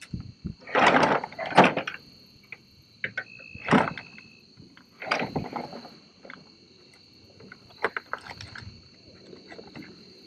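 Steady high-pitched insect chorus, with several short rustling and scraping noises over it, the loudest about a second in, and a brief steady tone near the four-second mark.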